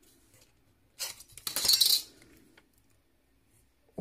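Steel ruler lifted off a cutting mat and set down on a tabletop: a brief metallic clatter and scrape about a second in.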